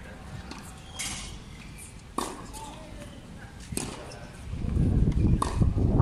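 Tennis balls struck by racquets in a baseline practice rally, a sharp pock about every second and a half, some strikes with a short ringing ping of the strings. A loud low rumble sets in about three-quarters of the way through.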